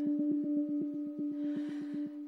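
Women's voices holding one low hummed note, with a fast, even pulsing of about ten beats a second underneath.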